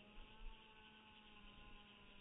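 Near silence with a faint steady hum made of several thin tones that fall slowly in pitch.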